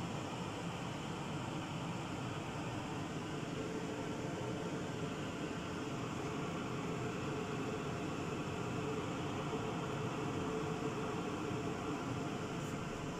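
Steady mechanical hiss and hum, as from a running fan, holding level throughout with no sudden sounds.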